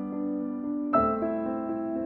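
Slow solo piano music: a held chord rings, then a new chord is struck about a second in and sustains.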